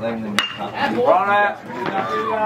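Metal baseball bat hitting a pitched ball: one sharp ping about half a second in. Then a loud, drawn-out shout.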